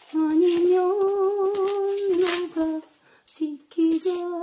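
A woman humming a slow ballad tune, holding one long, slightly wavering note for about two seconds, then a few shorter notes. Light crinkling of bubble wrap comes through as a plastic-wrapped ceramic flower pot is unwrapped.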